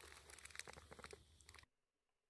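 Near silence, with a few faint, small clicks in the first second.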